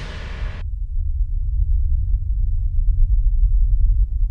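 Cinematic title-sequence sound effect: a whoosh that dies away about half a second in, then a deep rumble that swells and holds, louder toward the end.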